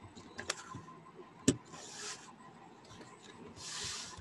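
Quiet handling noise: a few clicks, the sharpest about one and a half seconds in, and soft rubbing sounds.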